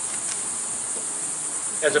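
A steady high-pitched hiss fills a pause in speech, and a man's voice starts again near the end.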